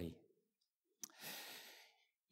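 Mostly near silence, with a short click about a second in followed by a soft intake of breath, picked up close by a clip-on lapel microphone.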